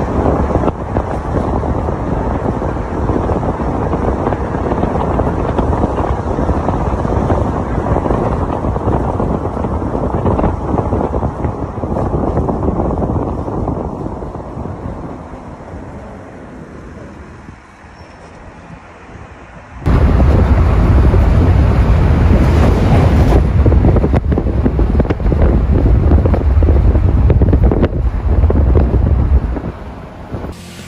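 Wind noise on the microphone and road noise from a car driving. The noise fades as the car slows in traffic, then cuts abruptly, about two-thirds of the way through, to loud, low wind buffeting at speed.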